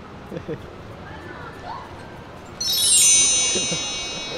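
A chime of many high ringing tones comes in together about two and a half seconds in, the highest first in a quick cascade, and rings on, slowly fading. Before it there is only a low background with faint voices.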